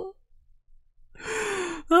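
A man's breathy sigh, falling in pitch, about a second and a half in, as he catches his breath after a fit of laughter.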